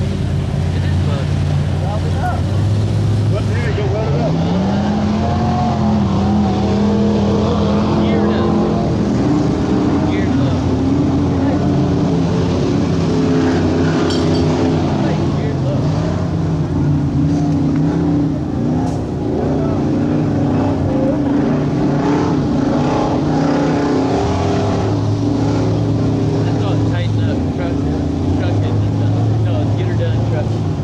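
Engine of a lifted mud-bogging pickup on oversized tires, revving up and down as it churns through deep mud and water, with a rise in pitch about four seconds in.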